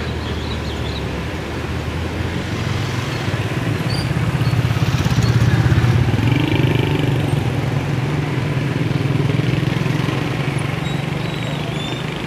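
A motor vehicle engine running close by, with a low, steady engine note that swells louder about halfway through and then eases back.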